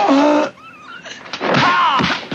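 Fighters' dubbed shouts and effort cries in a kung fu fight. A yell at the start falls in pitch and holds briefly. After a quieter moment, another rising-and-falling cry comes near the end.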